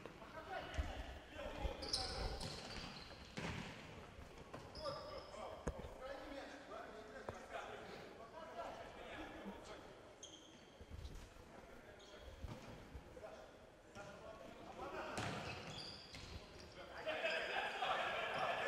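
Faint, echoing sound of indoor futsal play on a wooden sports-hall court: scattered ball kicks and bounces, short high shoe squeaks, and distant players' shouts, growing busier near the end.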